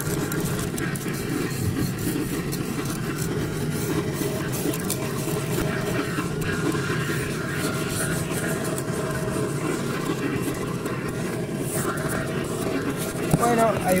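An old vacuum cleaner running continuously with a very noisy, steady drone and an even whine, as it sucks grass and dirt off a car's floor carpet.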